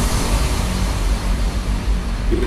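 Psytrance sound design in a breakdown: a steady, loud wash of noise over a deep bass rumble, with no melody line.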